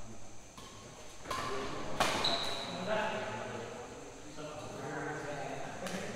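Badminton racket strikes on a shuttlecock during a rally, sharp single hits, the loudest about two seconds in and another near the end, over players' voices calling out on the court.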